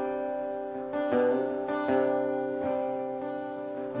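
Cutaway steel-string acoustic guitar strummed, a chord struck about once a second and left to ring between strokes.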